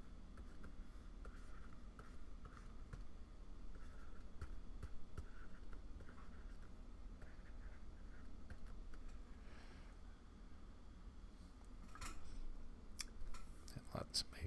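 Faint scratching and tapping of a pen stylus on a Wacom Cintiq pen display, with small clicks throughout and a few sharper clicks near the end, over a low steady hum.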